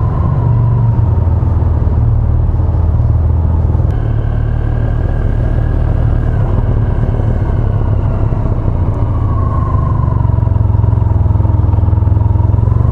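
Honda Crosstourer motorcycle engine running steadily at low speed as the bike creeps through slow traffic, a constant low rumble with a faint whine that rises and falls. The sound changes about four seconds in as the bike comes out of a tunnel.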